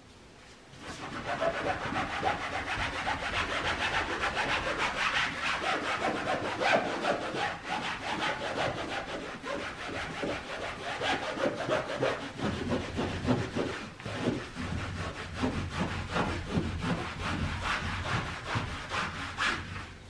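Hand scrubbing of a wall with a wiping pad, a continuous run of rubbing strokes that starts about a second in.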